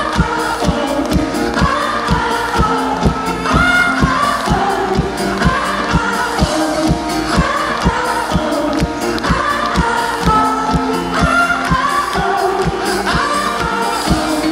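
Live pop-rock band performing: a male lead singer sings into a microphone over a steady drum beat of about two kicks a second, with bass and backing vocals, heard from the audience.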